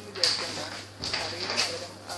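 Metal spoons scraping and knocking against a cooking pot as a spoonful of honey is worked into the curry base, in two short bouts, with a voice in the background.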